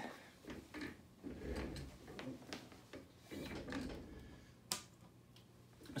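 Faint handling noise: scattered soft knocks and rustles, with one sharp click about three-quarters of the way through, over a low steady hum.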